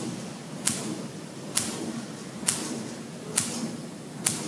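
Pulsair wand firing pulses of compressed air into a vat of fermenting grape must: a sharp burst about once a second, four times, with a steady low background in between. The air pulses mix the must and bring oxygen into the fermenting juice.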